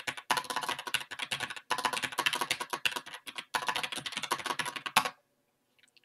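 Fast typing on a computer keyboard: a dense run of key clicks with two brief pauses, stopping about five seconds in.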